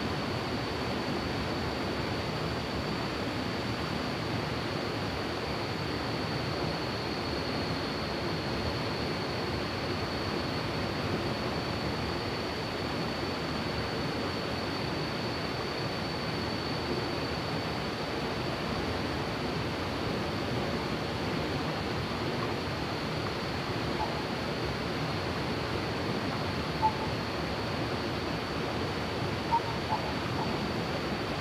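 Fast-flowing river water rushing over rocks, a steady, even wash of noise. A thin, steady high-pitched tone runs above it, and two small clicks come near the end.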